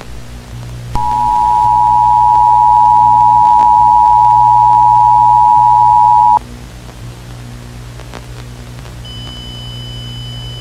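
Emergency Alert System attention signal: the dual-tone alert (853 Hz and 960 Hz together) sounds steadily, starting about a second in and cutting off suddenly about five and a half seconds later, over a steady low hum. Near the end a fainter, higher steady tone begins.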